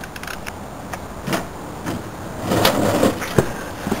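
Handling noise: a few sharp knocks and clicks with some rustling, the loudest cluster about two and a half to three and a half seconds in, as a box is picked up and opened.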